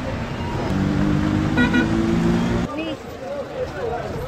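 A vehicle horn held steadily for about two seconds, then cut off, with people talking in the background.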